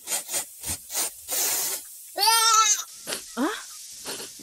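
A person crying: a run of short sobbing breaths, then one long wavering wail a little past two seconds in, followed by a few short rising sobs.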